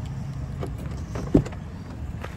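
Remote-started 5.3-litre V8 of a 2023 Chevrolet Silverado idling with a steady low hum. A single sharp click of the door latch comes about a second and a half in as the door is opened.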